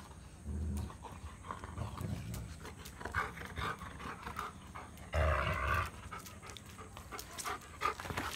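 Labrador retriever panting and growling in play while tugging on a ball, in uneven rough bursts; the loudest lasts under a second, about five seconds in.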